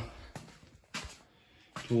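A pause in a man's speech, with quiet garage room tone and a couple of brief soft noises, the clearer one about a second in. His voice trails off at the start and comes back near the end.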